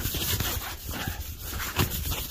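A bare hand rubbing over a dusty clear plastic window in a tarp, wiping it clean in a run of short, rough strokes.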